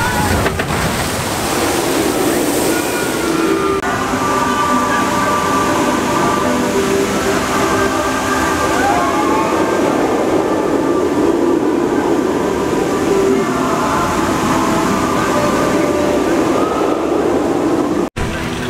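Water rushing and splashing as a flume-ride boat runs down its chute, for about the first four seconds. Then steady theme-park noise of a roller coaster running, with people's voices mixed in.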